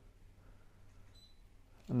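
Near silence: room tone, with no clear click or beep from the device's button.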